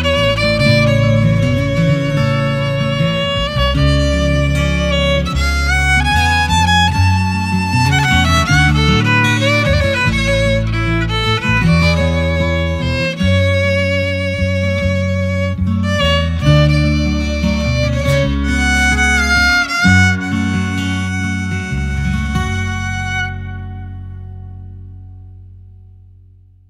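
Instrumental outro of a sung-poetry song: a wavering lead melody over guitar and bass, fading out over the last few seconds.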